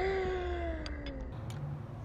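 A woman's voice holding one long wordless note that jumps up at the start and then slides slowly down for about a second, over a low steady background rumble.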